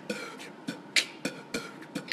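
A rhythmic beat of sharp clicks, about three to four a second.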